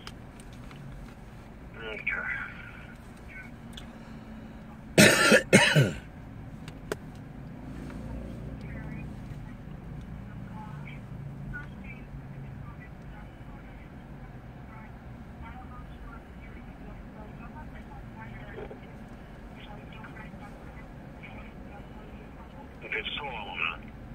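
Low steady background hum with faint voices, broken about five seconds in by two loud, short coughs.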